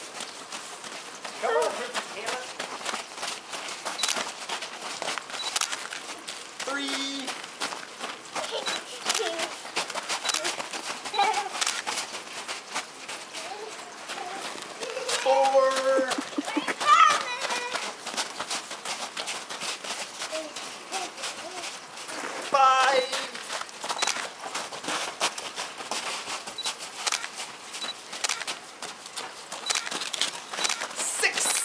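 Running footsteps crunching on packed snow, a quick steady patter all the way through, with children's high-pitched shouts and laughter breaking in a few times, loudest around the middle.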